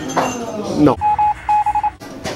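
A quick run of short electronic beeps at one steady pitch, about five in two groups, starting about a second in.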